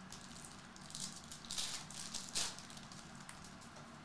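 Glossy Topps Chrome trading cards sliding and flicking against one another as a pack is shuffled through by hand, making a few short, faint swishes.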